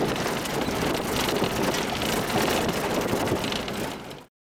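Vehicle driving on a rough dirt road: a steady rumble of engine and tyres with wind buffeting the microphone, dropping away abruptly right at the end.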